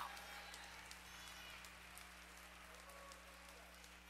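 Faint scattered clapping of hands from a church congregation, with faint voices under it and a steady low hum.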